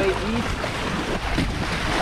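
Water rushing and splashing along the hulls of a Hobie Cat catamaran under sail, mixed with wind on the microphone: a steady, even noise with no engine.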